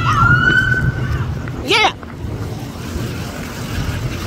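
Police car siren sounding briefly, a steady slowly rising tone that stops about a second in, followed by a short sharp chirp just before two seconds, over low traffic rumble.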